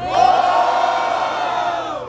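Crowd of spectators shouting and cheering together in one long yell that tails off near the end: the audience voting by noise for one of the two MCs in a freestyle rap battle.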